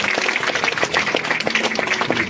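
A crowd clapping and applauding: many quick hand claps overlapping in a dense patter.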